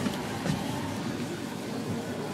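Steady mechanical hum and rumble inside a Westinghouse/Schindler elevator cab, with no distinct clicks or chimes.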